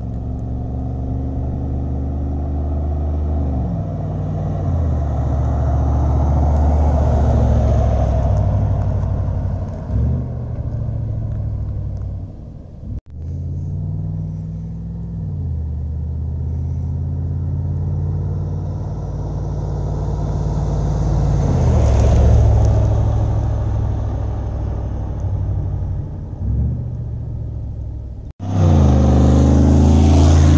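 A Jeep LJ with a swapped-in GM Gen V V8 (L83) and 6L80 automatic drives past while accelerating. Its engine note climbs and then drops as the transmission upshifts, and it is loudest as the Jeep goes by, on two separate passes. Near the end it cuts to a closer, louder run of the same engine.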